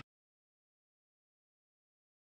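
Complete silence: the sound track has dropped out.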